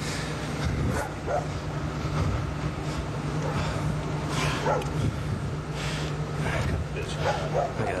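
A dog barking a few short times in the background, about a second in, midway and near the end, over a steady low hum.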